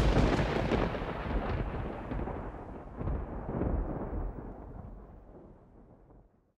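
A sudden deep boom that rumbles on, swells again about halfway, and fades away over about six seconds: a thunder-like logo sting sound effect.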